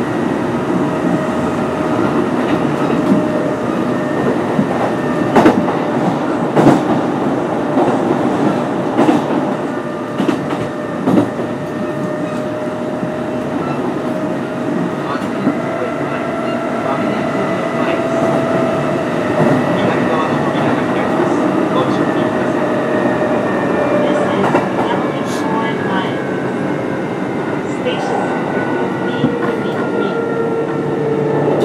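Kintetsu 8800 series electric train with field phase control running between stations: a steady motor and gear whine over rumbling wheel noise, with sharp rail-joint knocks. In the second half the whine's pitch slides slowly downward as the train slows for the next station.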